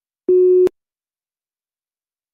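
A single electronic beep: one steady low tone, lasting under half a second and cutting off with a click.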